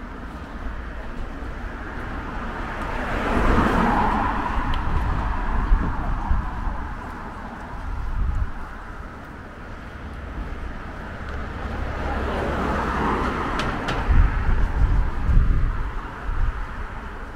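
Two cars passing on the road, one a few seconds in and another near the end, each swelling up and fading away.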